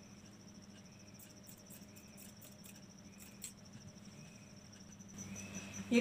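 Faint snips of scissors cutting a strip of fabric, a scatter of sharp clicks in the first half. Under them runs a steady, high-pitched pulsing trill like a cricket.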